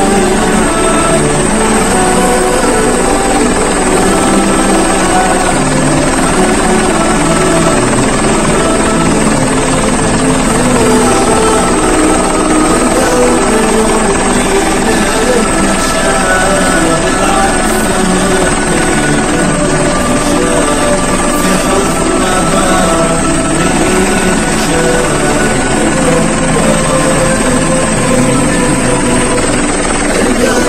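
Helicopter heard from inside the cabin: a loud, steady drone of rotor and engine with a thin high whine held throughout.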